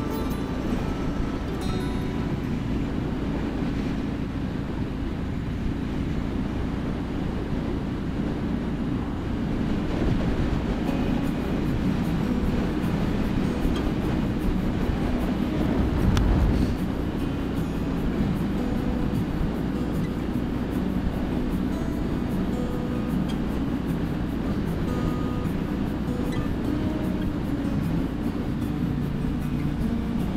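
2017 Triumph Street Scrambler's 900 cc parallel-twin running at a steady cruise, mixed with rushing wind on the microphone, with a brief louder low rumble about halfway through. Music plays along with it.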